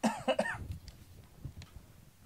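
A single short cough from a person.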